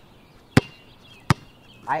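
Basketball being dribbled on a hard surface: two sharp bounces about three-quarters of a second apart, in a steady dribbling rhythm.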